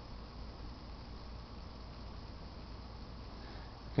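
Quiet room tone: a faint, steady hiss with a low hum underneath, and no distinct sound events.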